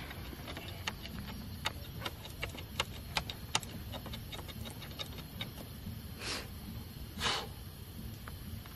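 Tent pole sections being handled and fitted together, with many light, irregular clicks and taps, then two short rustles near the end.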